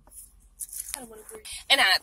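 A woman's voice speaking, short words that get much louder near the end.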